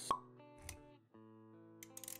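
Animated-intro sound effects over synthetic background music: a sharp pop just after the start, the loudest moment, then a low thud a little past half a second in. From about a second in, sustained music notes hold steady, with a few clicks near the end.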